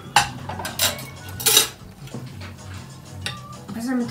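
Dishes and cutlery clinking on a table: a handful of separate sharp clinks, the loudest and longest about a second and a half in.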